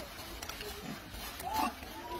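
A macaque's short, arching call about one and a half seconds in, preceded by a fainter low grunt.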